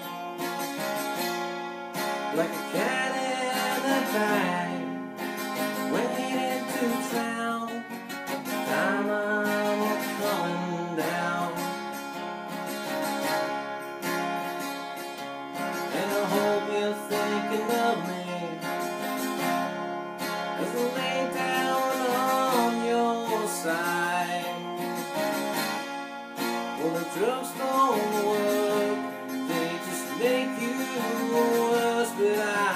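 Acoustic guitar strummed steadily through a song, with a man singing in phrases every few seconds.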